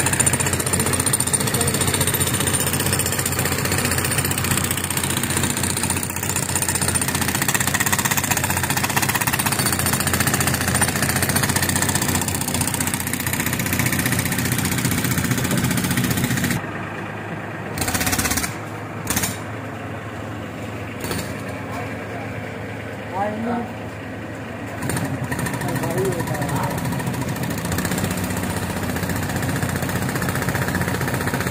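Pneumatic breaker run off an air compressor, hammering rapidly and continuously as it cuts the rock of a well shaft. It drops to a quieter stretch a little past halfway, with a few short loud bursts, then picks up again near the end.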